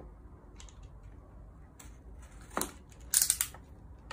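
Box cutter slicing the seal on a small cardboard box: short scrapes about two seconds in, with the loudest run of cutting near the end.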